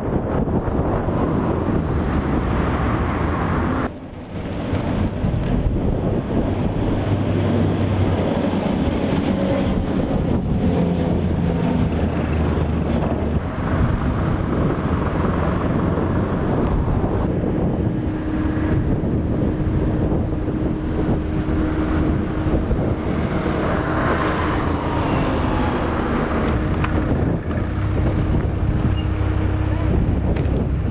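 Strong wind buffeting an outdoor camera microphone: a loud, continuous rushing with heavy low rumble, briefly dropping out about four seconds in. A faint steady drone joins about halfway through.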